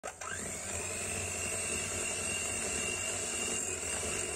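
Electric hand mixer beating whipped cream in a glass bowl: its motor whine rises in pitch as it comes up to speed at the start, then runs steadily.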